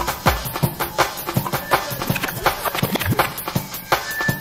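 Hardcore rave music from a live DJ set: a fast, busy breakbeat of drum hits, several a second, under synth sounds.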